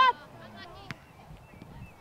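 A short, high-pitched shout from a spectator at the very start, then a quieter outdoor stretch with faint distant voices and one sharp knock about a second in.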